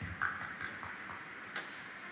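A few faint, irregular ticks and clicks over a steady low hiss of room tone.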